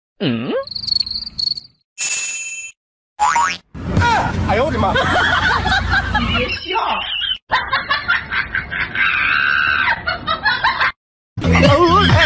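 Edited comedy soundtrack: a quick run of short cartoon sound effects, including a springy boing with a swooping pitch near the start, cut between short stretches of voices. Music with a steady beat comes in near the end.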